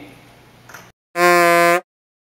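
A game-show style buzzer sound effect: one loud, flat buzz of about two-thirds of a second that starts and stops abruptly, marking a failure.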